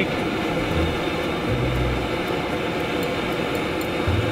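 Handheld propane torch burning with a steady hiss, its flame heating a bent steering tie rod so it can be bent back straight.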